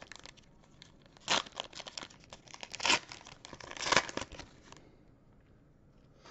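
Foil wrapper of a Panini Chronicles basketball card pack being torn open and crinkled, in three loud rustling bursts about a second and a half apart amid lighter crackling.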